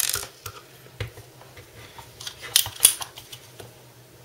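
Small screws being unscrewed from a metal hard-drive tray with a screwdriver: scattered light metallic clicks and scraping, with two sharper clicks a little after two and a half seconds in.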